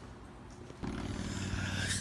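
Faint indoor room hum, then about a second in a cut to steady outdoor background noise beside a road, with a low hum and a hiss.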